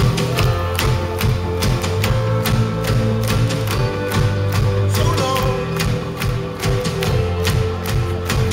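Live pop-rock band playing an instrumental passage with no singing: drums keeping a steady beat under bass guitar and keyboard.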